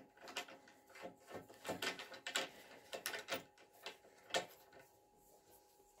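A landing-net adaptor being screwed onto its carbon handle: a run of faint, irregular small clicks and scrapes as the threads turn, with one sharper click about four and a half seconds in, then it goes quiet.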